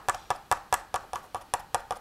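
A rapid, even series of sharp clicks, about five a second.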